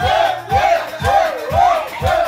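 Music with a bass beat about twice a second, with a group of people yelling and cheering over it.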